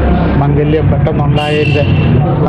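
A person talking, over a low steady hum; about a second and a half in, a brief steady high tone with a hiss sounds behind the voice.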